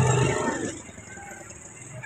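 A person's voice trailing off in the first half second, then a faint, steady outdoor background.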